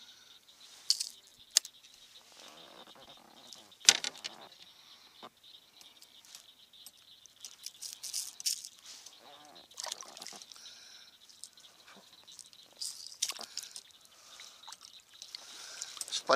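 Scattered clicks, rattles and small knocks of a small bass being unhooked by hand from a crankbait in a kayak, with some light watery noise; the sharpest knock comes about four seconds in.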